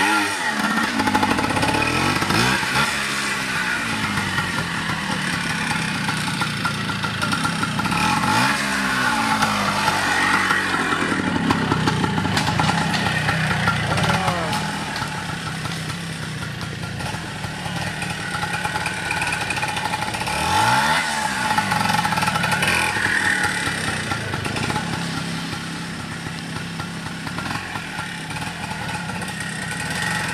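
Trials motorcycle engine revving up and falling back in short throttle bursts, again and again, as it is ridden slowly over rocks and roots. In between it drops back near idle.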